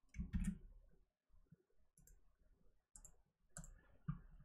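Faint, scattered clicks and taps of a computer keyboard and mouse.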